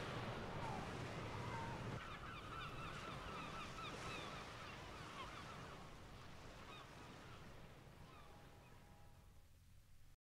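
Faint bird calls, many short chirps, over a steady rushing noise with a low rumble, fading out to the end of the record side.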